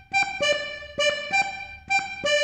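Diatonic button accordion (organetto) playing about five short detached notes that alternate between two pitches, a practice phrase of a Neapolitan tarantella. Each note starts with a faint button click.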